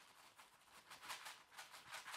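Uncooked rice grains trickling through a paper funnel into a fabric beanbag toy as it is filled: a faint, rapid run of tiny grain ticks.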